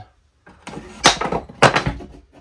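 Wooden resonator-guitar back being lifted and shifted against a wooden body mold: a run of scraping and knocking, with two louder knocks about a second and a second and a half in.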